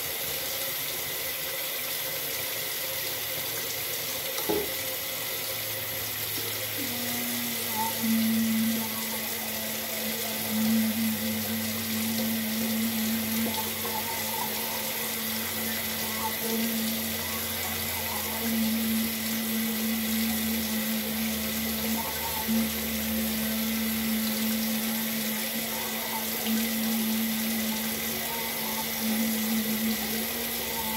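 Water running steadily from a tap into a sink. About seven seconds in, a low hum joins it and keeps breaking off and coming back.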